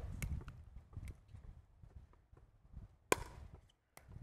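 One sharp, loud pop of a pickleball paddle striking the plastic ball about three seconds in, after a few faint taps over a low rumble.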